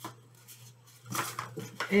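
A cardboard toilet-paper tube pressed and creased flat by hand to make it square: a single click at the start, then a short scratchy rustle of cardboard about a second in.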